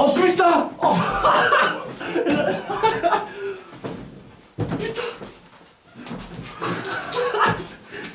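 Men's voices talking over each other and laughing.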